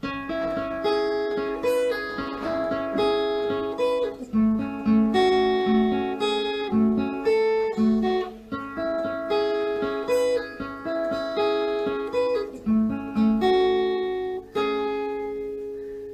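Steel-string acoustic guitar playing a picked single-note lead riff, plucked note by note across the top three strings with quick pull-offs. The phrase repeats about every four seconds, and the last note rings out and fades near the end.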